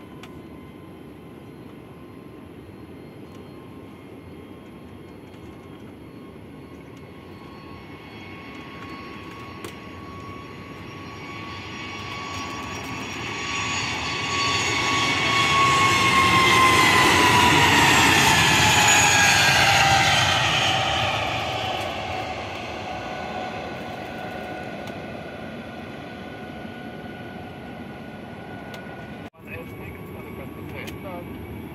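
Airbus A320neo's CFM LEAP-1A turbofans at takeoff power as the jet rolls past on its takeoff run: a rumble and whine that build up, are loudest a little past halfway, and then fade as it climbs away. The whine drops in pitch as the aircraft goes by.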